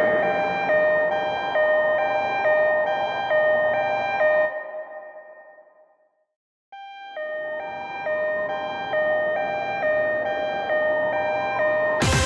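Two-tone hi-lo ambulance siren, switching steadily back and forth between a high and a low pitch. It fades out about five seconds in, goes silent for a moment, then fades back in.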